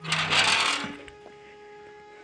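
A loud rushing noise for about the first half-second, then soft flute music begins with long held notes.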